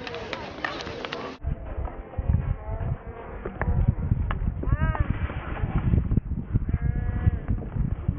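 Wind rumbling on the microphone on an open hockey pitch, with a few sharp knocks of stick and ball and brief distant voices calling.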